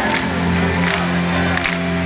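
Rock band playing live in a large hall, heard from within the audience: sustained low chords over a steady drum beat.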